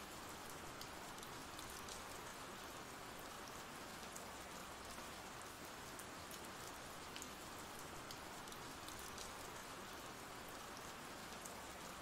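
Faint steady rain from an ambient rain sound-effect track: an even hiss with scattered drop ticks.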